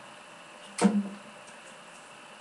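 A single pick strum on an acoustic guitar about a second in, its low note ringing briefly and fading away.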